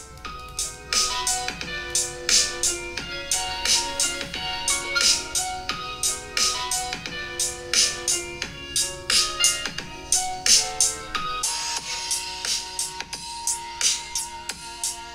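Instrumental track with a steady beat and a melody of held notes, playing from the Cubot X70 smartphone's single loudspeaker.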